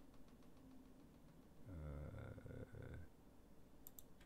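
Near silence with a few faint clicks. About two seconds in, a man makes a quiet, low, wordless murmur lasting about a second.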